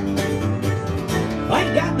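Live country band with upright bass playing an instrumental passage at a steady beat.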